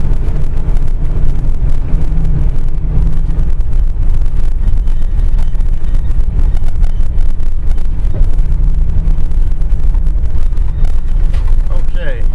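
Inside the cab of a 1998 Georgia Boy Maverick motorhome driving forward on a gravel road: a loud, steady, low engine and road rumble with a dense crackle of small clicks and rattles.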